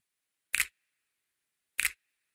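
Two sharp, short percussive clicks from a song's beat, about a second and a quarter apart, with the bass dropped out so that nothing else sounds between them.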